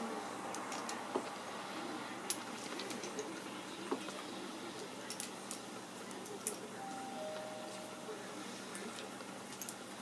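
Drilled eagle bones and claws on a strung necklace clicking against each other as it is held up and handled: a scattering of separate light ticks, about one a second.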